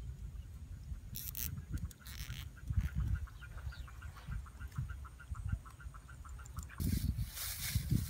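An animal calling in an even series of short chirps, about five a second, for several seconds over a low rumble. A loud rustle comes in near the end.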